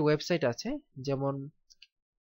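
A person speaking for about a second and a half, then two faint, short clicks near the end, like a computer mouse placing the cursor.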